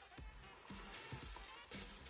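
Faint background music, with a soft rustle of a plastic processing cap being handled.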